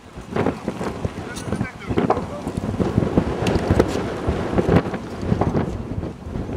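Wind buffeting the microphone in uneven, rumbling gusts that come in suddenly at the start.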